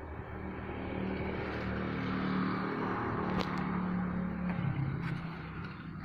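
A motor vehicle's engine passing by, growing louder to a peak around the middle and then fading. A single sharp click sounds just after the middle.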